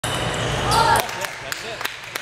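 A table tennis ball bouncing on the floor after a point ends: light, evenly spaced clicks about three a second, following a louder, noisier first second of play.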